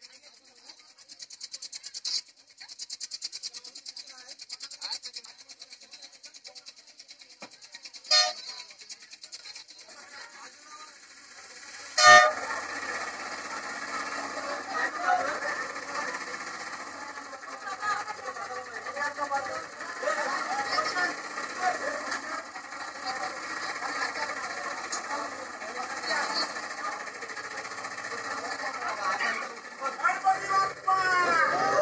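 A crowd of people's voices, fairly faint at first. A sharp click comes about eight seconds in and a louder one about twelve seconds in, after which many overlapping voices are louder and denser.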